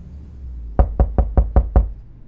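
Six quick, evenly spaced knocks, about five a second, starting a little under a second in.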